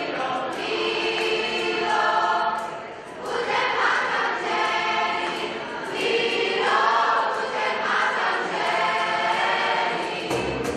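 A large youth choir singing in harmony, holding long chords in phrases, with a brief dip about three seconds in.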